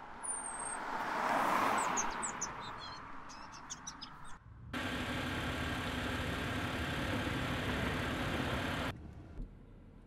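A car passing on a road, the noise swelling to a peak about a second and a half in and then fading, with birds chirping above it. About four and a half seconds in comes a steady car driving sound with a low engine hum, lasting about four seconds and cutting off suddenly.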